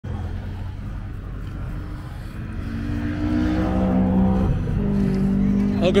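A car engine running low and then pulling away, its pitch rising about three seconds in and then holding steady as it gets louder.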